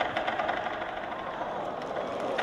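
Lion dance percussion in a large hall: irregular drum and cymbal strikes over steady crowd noise, the strikes thicker and louder at the start and thinning out.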